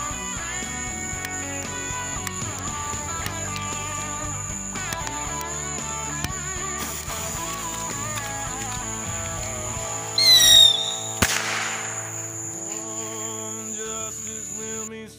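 A bottle rocket gives a brief, loud whistle that falls in pitch about ten seconds in, then a sharp pop a moment later. Under it a country song with guitar plays, and a steady high insect chirr runs behind.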